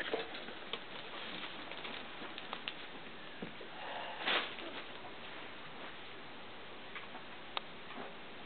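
Cavalier King Charles Spaniel puppies scuffling over plush toys on a quilt: soft rustling and small clicks, with a louder rustle about four seconds in and a sharp click near the end.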